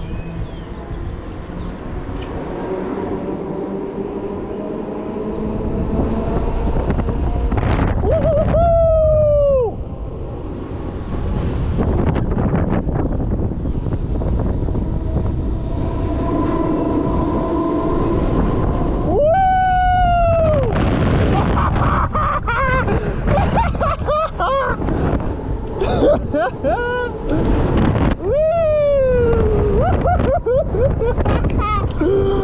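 Wind rushing over the microphone on a swinging booster thrill ride in motion, under a steady hum. Riders let out three long whoops that fall in pitch, about nine, twenty and twenty-nine seconds in.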